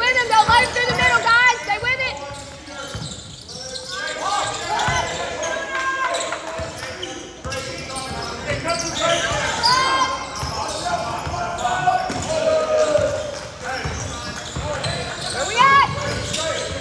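Basketball game in a gym: a ball dribbled on the hardwood court, sneakers squeaking in quick bursts (most in the first two seconds and again near the end), and players' and spectators' shouts echoing in the hall.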